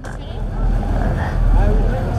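Tour boat under way: a steady low rumble with water rushing along the hull. Faint voices sound in the background.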